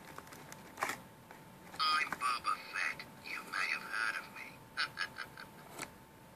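Boba Fett electronic talking helmet's small built-in speaker playing a tinny, warbling electronic voice clip that begins about two seconds in, after a single click. A faint steady electronic whine sits underneath.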